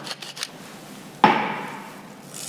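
A single sharp clink of a small ceramic bowl knocking against the ceramic mixing bowl as seasoning is added, just past a second in, with a short ring dying away. A few faint light ticks come before it.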